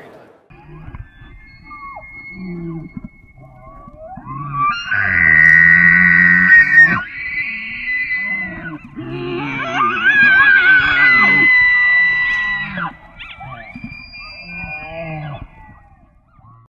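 Bull elk bugling twice, about five and ten seconds in: each call glides up into a long high whistle over a low growl, then breaks off. Quieter low grunts and faint whistles come before and after.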